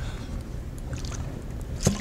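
Low steady rumble of room and microphone noise, with a few faint light taps and one sharp click near the end as a plastic water bottle is handled and lifted to drink.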